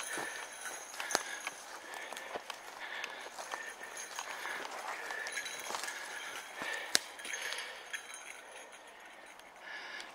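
Footsteps through forest undergrowth, with scattered twigs snapping; a sharp crack about seven seconds in is the loudest.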